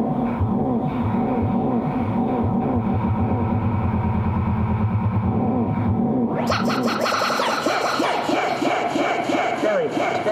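Electronic music from a modular synthesizer: a fast stream of pulses and quick pitch swoops over a low bass. About six and a half seconds in, a bright hissy layer enters; the bass drops out soon after, and larger falling swoops come near the end.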